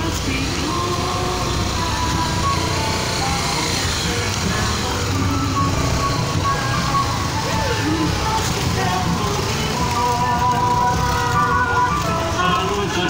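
Engines of slow-moving road vehicles and motorcycles running, a steady low rumble, with music and voices mixed in over it.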